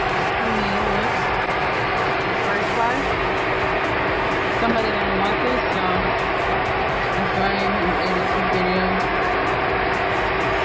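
Steady airliner cabin noise in flight: an even rush of engines and airflow with a constant hum, loud enough to bury a faint voice beneath it.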